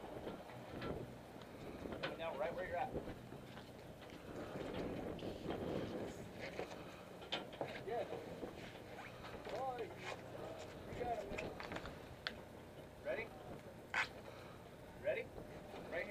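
Faint, indistinct voices of people talking on a fishing boat's deck over a low steady hum from the boat and wind, with a few short sharp clicks and knocks.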